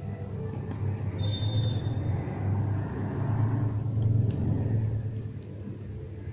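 Low background rumble that swells through the middle and eases off near the end, with a brief thin high tone about a second in.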